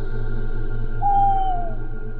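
Eerie background music of steady sustained drones, with one clear tone that glides downward for almost a second, about a second in.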